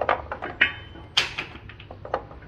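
Light handling clatter: a few short knocks and a brief metallic clink as kitchen items are picked up, with one sharper, louder noise just over a second in.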